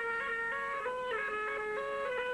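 A reedy wind instrument, bagpipe-like, plays a quick folk dance tune in short stepping notes.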